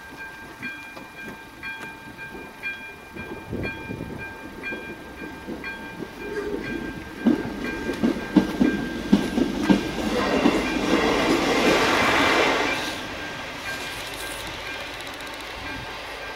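A level-crossing warning signal sounds a steady repeating electronic tone while a train passes over the crossing. The train's rumble builds, its wheels clack over the rail joints a few times, it is loudest for a few seconds past the middle, then it fades away.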